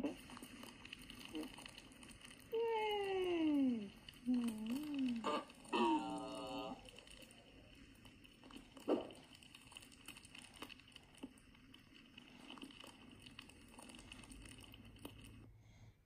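Soundtrack of a LEGO stop-motion short played back from a video: a few voice-like sliding sounds, one long falling glide, a short wavering one and a brief buzzy one, over a steady thin high whine.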